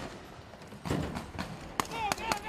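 Men clambering into the bed of a pickup truck: a few scattered knocks and thumps on the truck's body, with a shouting voice near the end.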